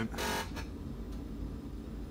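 Miller Trailblazer 325 EFI welder-generator being switched on: a short buzzer-like tone about a quarter second in, then a low steady hum as the control panel powers up.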